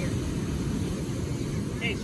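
Steady rumble of wind on the microphone mixed with breaking surf.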